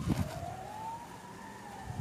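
A faint siren-like wailing tone that rises slowly, peaks about halfway through and sinks again.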